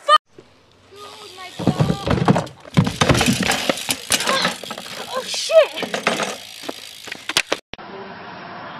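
A BMX bike crash on asphalt: the bike and rider hit the ground with a clatter and several sharp knocks, mixed with people's voices. It cuts off abruptly near the end.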